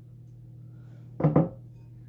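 A clear glass mixing bowl of water set down on a wooden table: one short clunk with a brief ring about a second and a quarter in, over a steady low hum.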